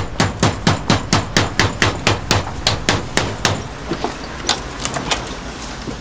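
Rapid, insistent knocking on a front door, about five knocks a second for the first three and a half seconds, then slower and fainter knocks.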